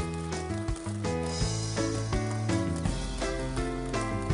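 Upbeat cartoon background music: a melody of short held notes stepping from pitch to pitch over a bass line.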